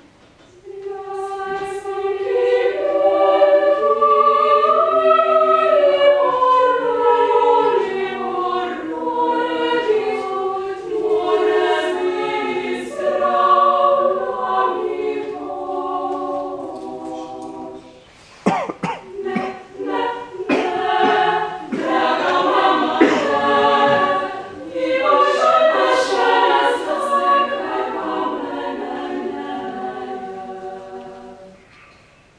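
Female choir singing a cappella in sustained, slowly moving chords. About eighteen seconds in the singing drops away briefly, and a run of short, sharp sounds follows before the full chords return.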